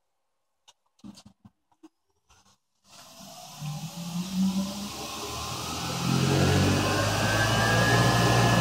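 A few faint clicks, then about three seconds in the 1925 Spencer Turbine Cleaner's electric motor and turbine blower start on a variable frequency drive. Its whine rises steadily in pitch and loudness as the drive ramps it up toward full speed.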